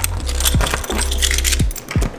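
A bunch of keys jangling and clinking in the hand while unlocking a door, over loud background music with deep bass notes that drop in pitch.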